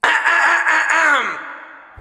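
An editing sound effect at a video cut: a pitched, voice-like sound that slides down in pitch and fades out in under two seconds.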